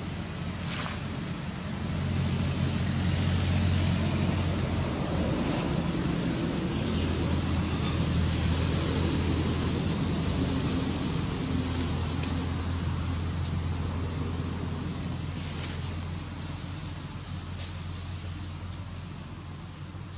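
A vehicle engine running, a low steady hum that swells a couple of seconds in and slowly fades toward the end.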